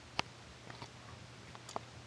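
A few small, sharp clicks over a faint steady low hum, the loudest about a fifth of a second in and fainter ones near the middle and near the end.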